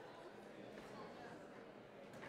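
Faint murmur of voices in a large hall, with light knocks and shuffling as chairs and music stands are moved on stage.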